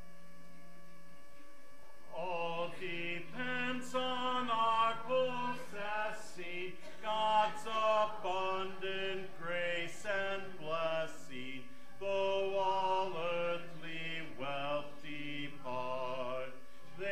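A hymn sung slowly with keyboard accompaniment. A held keyboard chord sounds alone for about the first two seconds, then the singing comes in over sustained bass notes.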